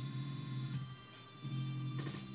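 Electronic music playing out of Ableton Live while an Effectrix glitch effect is applied: a held low note that drops out for about half a second near the middle and then comes back.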